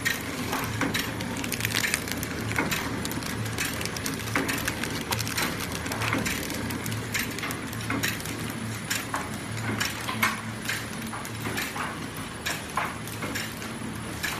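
Horizontal pillow-pack flow-wrap machine running: a low steady hum that swells and fades at a regular pace, with continuous rapid clicking and clattering from its mechanism.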